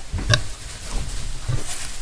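A nursing sow grunting low, twice: once about a third of a second in and again about a second and a half in.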